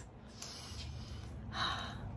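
A person's audible in-breath: a faint breath about half a second in, then a stronger intake of breath near the end, taken before speaking again.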